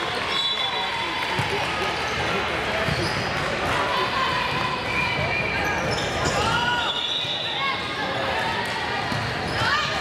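A volleyball being struck and bouncing during a rally in a large, echoing gym, over a steady din of many voices from players and spectators.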